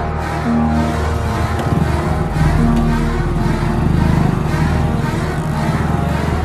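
Suspenseful film background score: sustained low tones with a short note repeating every couple of seconds. Under the music, a rough rumbling layer swells in the middle.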